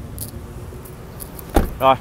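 Car door being shut with a single solid thump about one and a half seconds in, after a few faint clicks of handling.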